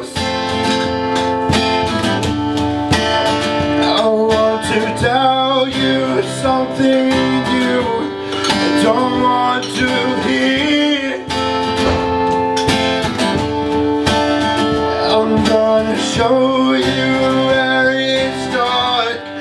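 Acoustic guitar strummed steadily while a man sings into a microphone.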